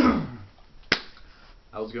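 A person sitting down heavily, a loud thud and rustle that dies away over about half a second, then a single sharp hand clap a little under a second later. A man's voice begins speaking near the end.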